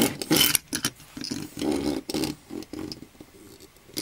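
Small metal diecast toy tractor pushed back and forth across a tabletop, its wheels rolling with a rattling rumble in several short runs, quieter near the end.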